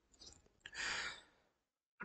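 A man's faint breath, a single soft exhale lasting about half a second, about a second in, preceded by a small click.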